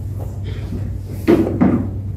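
Two short knocks close together a little past halfway, over a steady low hum: the knocks of play at a wooden chess board, a piece being set down and the clock pressed.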